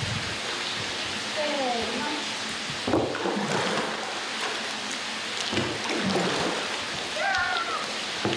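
Hot-spring bath water churned and splashed by a long wooden yumomi paddle pushed back and forth through it, a steady rushing and splashing. This is yumomi, stirring the very hot spring water to cool it. Short vocal sounds come about a second and a half in and again near the end.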